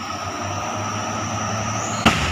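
Steady traffic noise led by a loaded truck's diesel engine pulling uphill: a low, even engine hum with a thin, high, steady whine above it.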